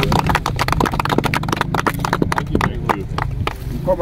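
A small group clapping: quick, uneven sharp claps that overlap one another.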